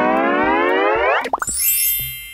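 Cartoon sound effect: a pitched tone glides steadily upward for about a second, followed by two quick upward blips and a faint high rising sparkle that fades out.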